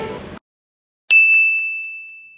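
Background music cuts off early on, and after a moment of silence a single bright bell-like ding sound effect strikes about a second in and rings out, fading away over the next second and a half, marking a step as completed with a check mark.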